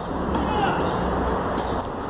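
Steady low outdoor rumble of urban background noise, with no ball strikes and only a faint, brief voice in the distance.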